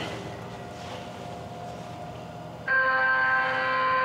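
Presto card reader on a TTC subway fare gate sounding one long electronic error tone that starts suddenly about two and a half seconds in, rejecting the card tap because the card has already been tapped.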